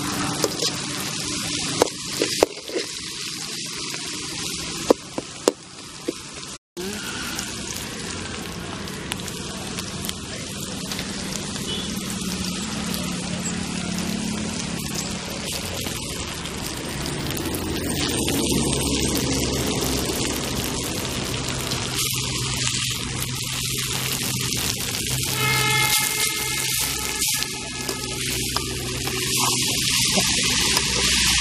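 Onions, dried red chillies and curry leaves frying in oil in an aluminium kadai, a steady sizzle, with a metal ladle clinking and scraping against the pan a few times in the first seconds. Later, cooked rice is mixed into the tempering and the sizzle carries on under the stirring.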